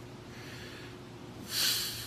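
A bodybuilder's forceful breaths while straining in a most-muscular pose: a faint hissing exhale about half a second in, then a loud, short one about one and a half seconds in. A low steady hum runs underneath.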